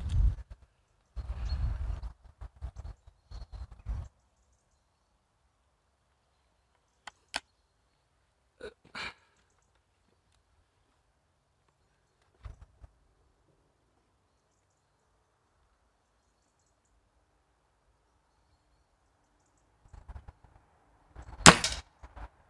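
Break-barrel spring-piston air rifle, a Walther LGV, being cocked and loaded, with handling rumble and a few small clicks as the barrel is closed, then a long quiet stretch while aiming. It fires one sharp shot near the end.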